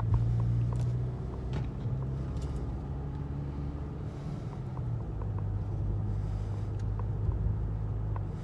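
Engine and road noise inside the cabin of a moving car: a continuous low drone whose note shifts slightly a few times as the car drives on.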